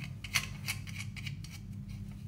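Light plastic clicks and scraping as the threaded plastic pin and black locking nut of a dual flush-button assembly are turned by hand on their thread, a small tick about three times a second, over a low steady hum.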